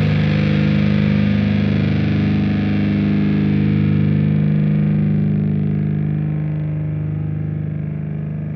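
Music: a sustained, distorted electric-guitar chord rings on through effects, without sharp strikes. Its treble slowly darkens, and it eases off in loudness near the end.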